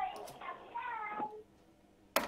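Cat meowing twice: a short meow, then a longer one.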